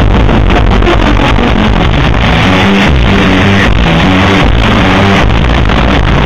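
Surf rock band playing live, with a fast run of low notes over a dense wall of sound. The recording is overloaded and distorted, so the music sounds garbled.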